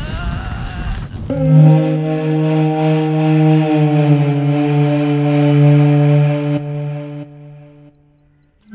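A burst of fire with a low rumble for about the first second, then a single long held note of film background score, steady and rich in overtones, that fades out near the end.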